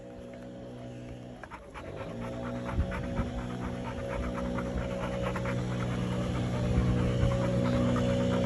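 Labrador retriever puppy panting in quick, rhythmic breaths, over background music of steady held tones.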